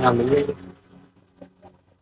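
A voice draws out the last word of a spoken price for about half a second. A few faint taps follow, from cardboard suit boxes being flipped through on a metal shelf.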